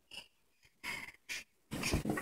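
A person's short breathy exhales, four or five in quick succession, the last one the loudest.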